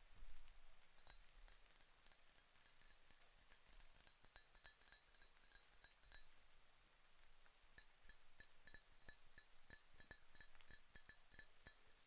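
A glass of milk tapped in quick, light, irregular taps, each with a faint bright ring of the glass. The taps come in two runs with a short pause about halfway through.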